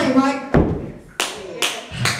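A heavy thump, then a few sharp hand claps about two a second, just after a sung phrase ends.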